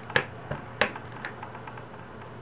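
A clear acrylic stamp block tapping against a plastic-cased ink pad as it is inked: two sharp clicks about a quarter and three quarters of a second in, then a couple of softer clicks.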